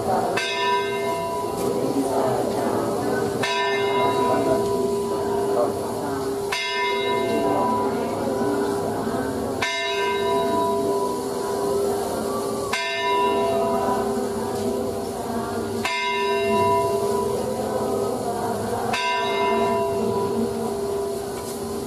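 A temple bell struck about every three seconds, each strike ringing on steadily into the next.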